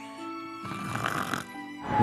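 Background music with a snoring sound effect laid over it.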